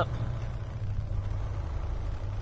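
Semi truck's diesel engine running at low speed, heard from inside the cab as a steady low hum.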